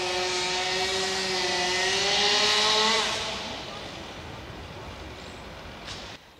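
Two-stroke chainsaw running at high revs up in a tree. Its pitch creeps up and it gets louder, then it eases off about three seconds in and carries on more quietly.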